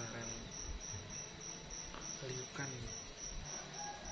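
A cricket chirping steadily in a high-pitched, even rhythm of about four chirps a second.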